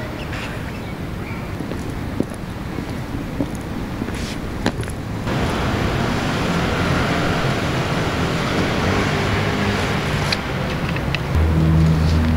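Steady road-traffic noise of a city street, with a few sharp clicks in the first half. About five seconds in, the noise turns louder and hissier.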